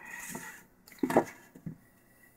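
A few light knocks and rubs from things being handled, the loudest a short knock about a second in and a smaller one soon after.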